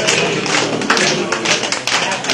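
A group of people clapping their hands, many overlapping claps, with voices faintly underneath.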